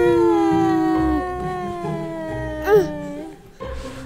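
A woman's long, drawn-out mock crying wail, its pitch sliding slowly down, with a short rising-and-falling squeal near the end before it fades out.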